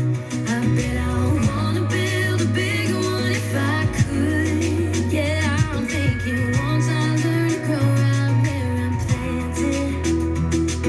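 Country song on the radio: a singer over a steady bass line and guitar.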